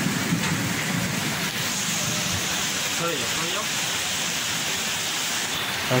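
Steady heavy rain falling, an even hiss at a constant level.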